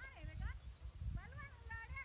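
Voices of people talking and calling out, over a steady low rumble of wind on the microphone, with faint short high chirps in the background.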